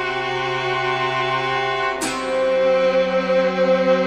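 Film-score music for bowed strings: violin and cello hold sustained chords, moving to a new, louder chord about halfway through.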